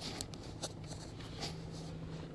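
A steady low hum inside a car's cabin with a few short sharp ticks scattered through it: a noise that may or may not come from the car itself.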